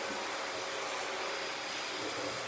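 Steady background hiss with a faint, constant hum running under it. Room tone, with no distinct event.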